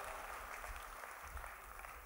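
Faint, even hiss of room background noise picked up through the hall's microphone and sound system, sinking slowly, in a short pause in the speech.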